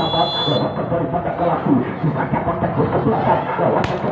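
Crowd chatter and voices around a volleyball court. A short, steady, high referee's whistle sounds right at the start, and a single sharp slap comes just before the end: the whistle authorising the serve, then the ball being struck on the serve.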